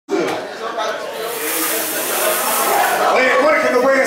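Indistinct voices of people talking in a room, with a steady high hiss from about a second in to about three seconds.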